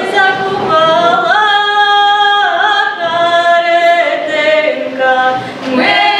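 Young women's folk ensemble singing a cappella in the authentic Ukrainian group-singing style: several voices holding long notes together and sliding between pitches, with short breaths between phrases. The song begins right at the start.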